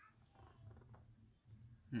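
Quiet room with a faint steady low hum, then a short hummed "hmm" from a person right at the end.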